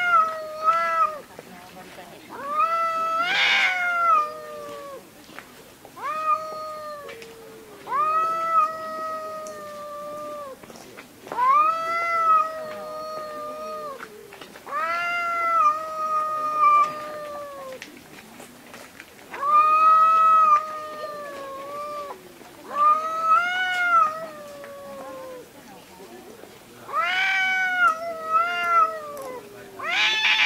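Two cats yowling at each other in a standoff: long, wavering calls one after another every two or three seconds, each rising and then slowly sinking in pitch. The calls about three seconds in and near the end are harsher and raspier. It is the threat caterwauling that comes before a fight between rival cats, here thought to be over a female.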